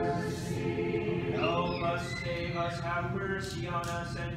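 Orthodox liturgical chanting. A held sung note fades at the start. From about a second and a half in, a single man's voice intones the next petition of the litany, with a gliding pitch.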